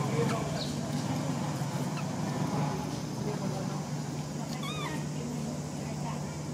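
Young macaque giving a short, wavering squeak near the end, with a few fainter squeaks before it, over a steady low hum.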